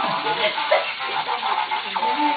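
People talking and laughing over a faint electronic tune from a light-up push-button toy ball.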